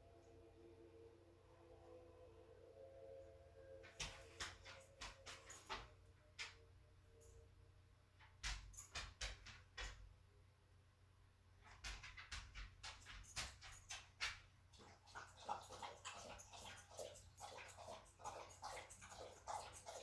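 A pet dog making faint bursts of short, sharp sounds from about four seconds in, coming thicker near the end. Faint lingering tones fade out in the first few seconds.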